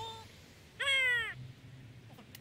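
A crow cawing: a faint short call at the start, then one loud call falling in pitch about a second in.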